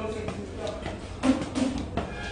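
Footsteps climbing concrete stairs, a few thuds with the strongest a little past the middle, over faint music.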